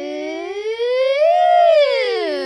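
A long, unbroken voice-like note, sounding at several pitches at once, sliding slowly up to a peak about halfway through and then back down.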